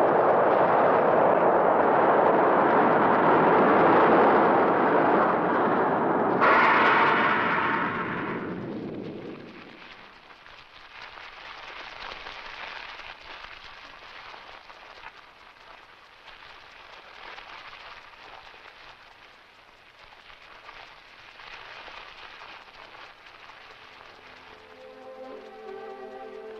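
A long explosion sound effect in an old film soundtrack, the crash of the alien spaceships: dense noise that holds for about nine seconds, with a sharper second burst about six and a half seconds in, then dies away to a faint hiss. Music comes back in near the end.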